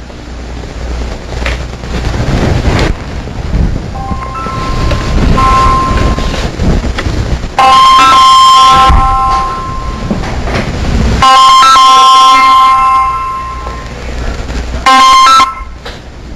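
A chord of steady electronic-sounding held tones, loud, in three stretches: about two seconds, just under two seconds, and under a second near the end. Fainter versions come in from about four seconds, over a low rumble.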